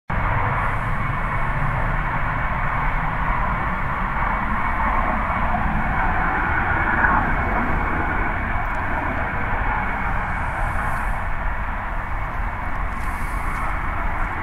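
A natural gas well flare burning, a steady, unbroken noise with no change in level.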